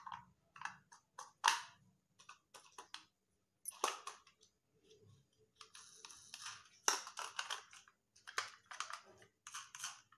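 Kinder Joy plastic egg capsules and their wrapper being handled and pulled apart: an irregular run of plastic clicks, crinkles and scrapes.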